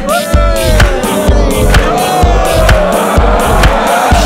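Deep house track built from human voice and body sounds: a steady kick about twice a second with crisp hi-hat ticks, and long voice-made tones gliding up and down over the beat.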